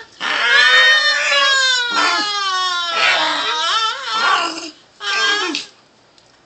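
Small dog giving long, wavering whining cries that slide down in pitch, about four in a row with short breaks between them.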